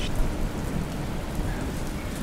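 Stock thunderstorm sound effect: steady rain with a low rumble of thunder.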